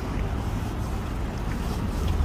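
A steady low rumble with a hiss over it, typical of wind buffeting a phone's microphone outdoors.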